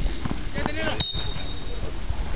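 Voices of players and onlookers calling out at an amateur football match, over a steady low rumble of wind on the microphone. About halfway through, the sound breaks off abruptly and a steady high-pitched tone begins.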